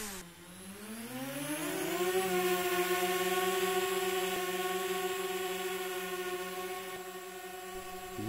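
DJI Spark quadcopter's four propeller motors spinning up for a palm launch: a whine that rises in pitch over about two seconds, then a steady hovering buzz.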